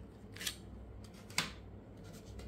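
Plastic wrapper of a pack of watercolour pens being handled: two brief crinkles, about half a second and a second and a half in, the second sharper.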